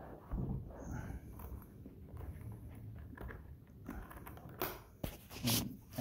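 Faint handling noise as a sword in its scabbard is worked into a leather case: irregular rustling, scraping and light knocks, with a few sharper knocks a little before the end.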